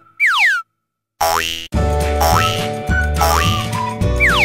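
A cartoon sound effect, a quick falling pitched swoop, about a quarter second in, followed by a brief silence. Then bouncy children's background music resumes, with a short rising swoop about once a second.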